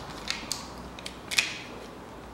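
Timing chain and its tensioner slipper being worked by hand on the engine front while the chain slack is taken up: a few small metallic clicks and clinks, the loudest about one and a half seconds in.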